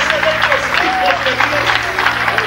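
A congregation clapping and calling out together, with a man's raised voice exclaiming over them, and a low note held steadily underneath.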